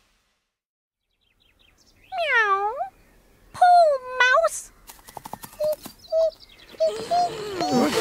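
A cat meowing twice: a long, bending meow about two seconds in and a shorter one about a second later. These are followed by a run of short squeaky chirps and clicks.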